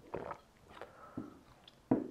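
A man chewing a snack and breathing right after downing a shot of vodka: a series of short, soft mouth sounds, with a louder sudden one near the end.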